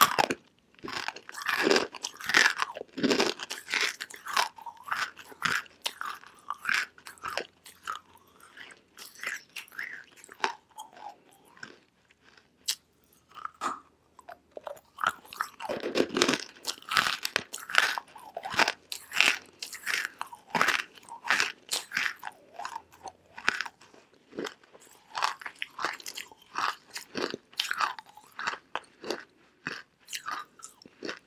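Crunching and chewing of dry chunks of edible clay, with bites snapping off pieces. The chewing grows quieter for several seconds in the middle, then loud crunching starts up again.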